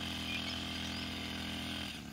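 Small engine of a backpack power sprayer running steadily at a distance, misting spray over a chilli field.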